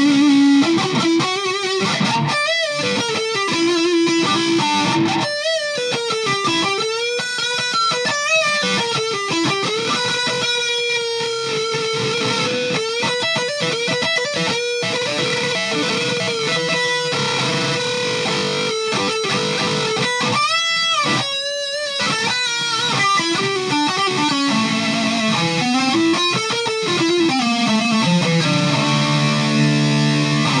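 Electric guitar, played on its bridge pickup through a Boss ME-50 on the Metal distortion setting with the variation engaged: very high-gain, heavily distorted lead playing with bent notes and vibrato, and a long sustained note in the middle. Near the end it moves to repeated low notes.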